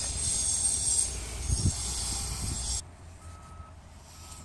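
Outdoor background: a steady high-pitched buzz over a low rumble, which stops abruptly a little under three seconds in. In the quieter stretch after it, one faint steady beep about half a second long, like a vehicle's reversing alarm.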